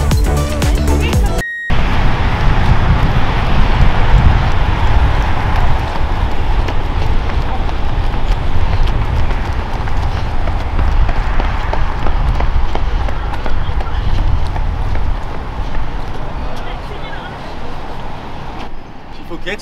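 Electronic background music cuts off about a second and a half in. It gives way to loud, steady outdoor noise with a heavy, uneven low rumble, typical of wind on the microphone.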